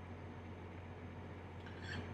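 Quiet pause: a faint, steady low hum under light background hiss.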